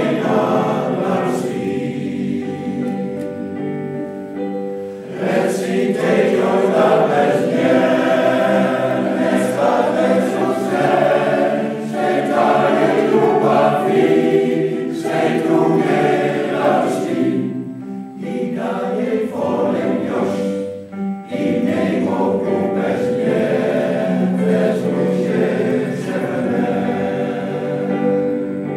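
A men's choir singing in several parts, with a brief break in the singing about two-thirds of the way through.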